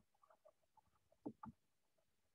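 Near silence with two faint soft ticks about a second and a half in, from a stylus tapping on a tablet screen while handwriting.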